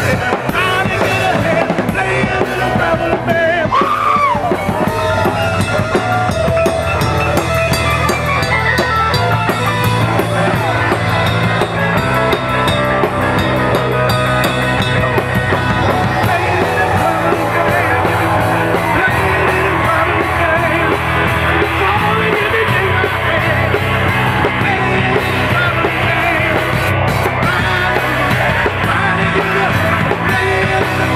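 Live rock band playing loudly: drum kit, electric guitar and bass, with a man singing.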